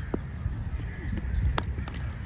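A single sharp crack of a cricket bat striking a tape ball about a second and a half in, heard over wind rumble on the microphone and faint distant voices.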